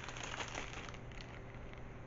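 Faint, soft crinkling of a small plastic bag holding a wax melt sample as it is handled.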